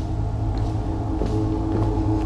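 A steady low hum with several held tones layered over it, running unchanged without a break.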